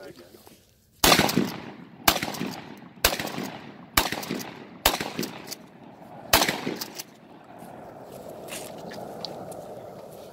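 A shotgun fired six times in quick succession, about a second apart with a slightly longer pause before the last shot, each report echoing briefly across the open range.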